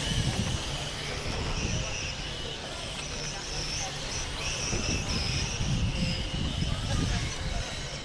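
High whine of M-chassis electric RC cars with 21.5-turn brushless motors lapping the track. It comes and goes in stretches as the cars pass, over a low rumble.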